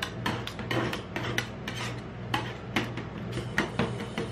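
Metal spatulas chopping and scraping half-frozen ice cream on a steel rolled-ice-cream cold plate: several sharp clacks and scrapes a second, with a brief lull about halfway through, over a steady low hum.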